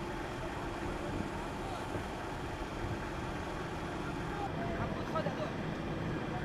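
Steady low rumble of armoured military vehicles driving on a road, with faint voices briefly about five seconds in.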